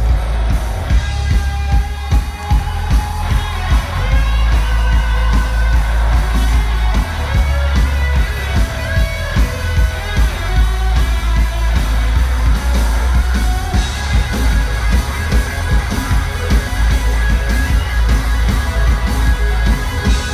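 Live rock band playing: electric guitars over a heavy bass and a steady drum beat.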